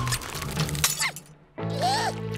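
Cartoon soundtrack: background music under a sharp shattering sound effect as an icy blast strikes. A brief hush follows, then the music comes back with a squeaky creature chirp near the end.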